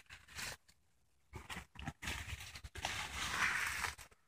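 Dry grass and brush rustling and crunching under footsteps: a few faint crackles at first, growing steadier and louder in the second half.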